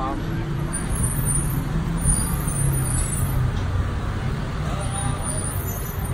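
Road traffic: a steady low rumble of vehicle engines running on the street.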